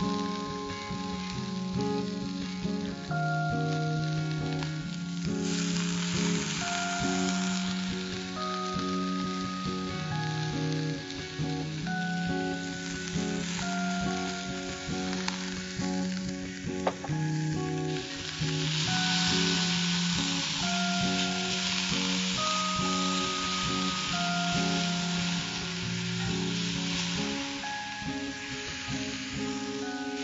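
Chopped onions sizzling as they fry in oil in an iron kadai. The sizzle swells louder for several seconds in the second half. Soft background music of slow, held notes plays over it.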